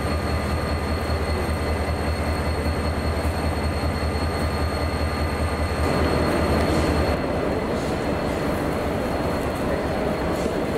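Diesel locomotive engine idling: a steady low hum under a general hiss. The hum drops away about seven seconds in.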